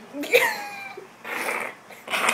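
A woman laughing: a high squeal that falls in pitch, then a breathy, airy burst of laughter.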